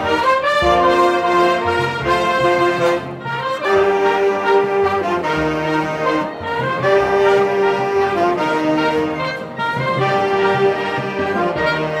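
Marching band playing a tune on the move, saxophones and brass to the fore, in melodic phrases of about three seconds each.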